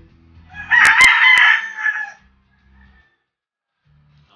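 A rooster crowing once, a call of about a second and a half starting just over half a second in, with a few sharp clicks over it.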